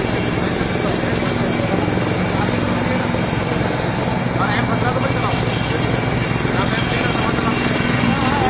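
A steady engine-like drone runs throughout, with faint voices talking in the background.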